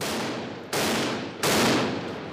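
Small-arms gunfire: three loud reports about two-thirds of a second apart, each trailing off in a long ring-out.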